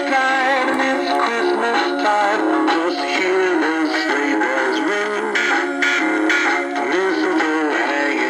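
Animated dancing Santa figure playing its built-in Christmas dance song: steady music with a sung melody line.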